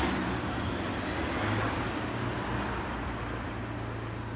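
Road traffic: a car driving past on the street, its tyre and engine noise loudest at the start and slowly fading away.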